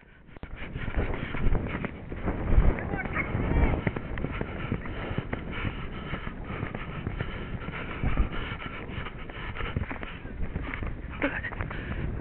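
A horse galloping over a dirt cross-country track, its hoofbeats thudding irregularly under steady wind noise on a helmet-mounted camera.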